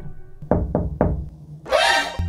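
Three quick knocks on a wooden door, a quarter of a second apart, over background music. A short rising sound follows near the end.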